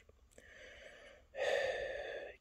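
A man drawing an audible breath through his mouth, a little past halfway through, after a fainter breath near the start.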